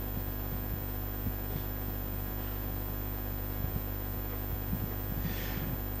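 Steady low electrical mains hum with faint room noise and a few soft clicks.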